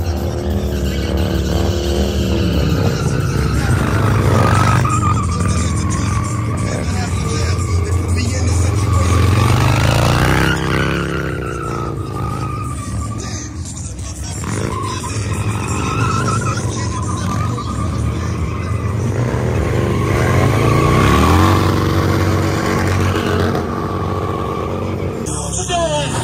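Motorcycle engine revving hard and repeatedly, its pitch climbing and falling twice, as the rear tyre spins in a smoking burnout on the pavement.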